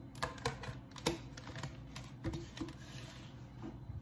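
About half a dozen light, irregular clicks and taps, the loudest about a second in, as small objects are handled on a kitchen counter.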